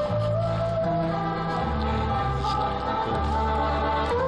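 Live acoustic ensemble playing: sustained accordion chords, a held melody line that glides slightly in pitch, and double bass notes stepping underneath, changing about once a second.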